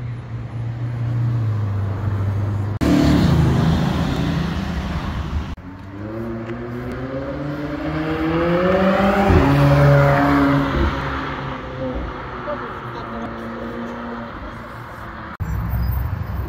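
Supercar engines in a run of edited clips. A red Ferrari's engine runs at low revs, then a short loud burst of acceleration follows. A McLaren then accelerates hard, its engine note climbing steadily for several seconds before the pitch drops sharply and settles.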